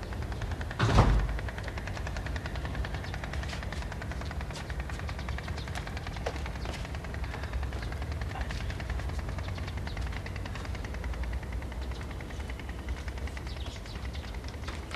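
A metal railing gate shutting with a single loud knock about a second in, followed by a steady low rumble with a fast, even crackle.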